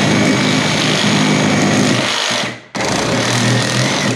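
Milwaukee M18 Super Sawzall cordless reciprocating saw running at full speed with a metal-cutting blade, cutting into a shoe's steel toe cap. It runs steadily, stops briefly about two and a half seconds in, then starts again and stops at the very end.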